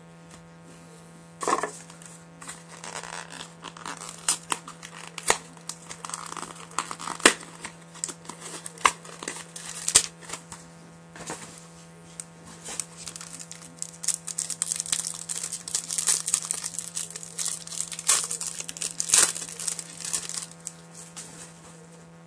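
Clear plastic wrapping on trading cards crinkling and tearing as it is handled and peeled off, in an irregular run of crackles that starts about a second and a half in. A steady low electrical hum runs underneath.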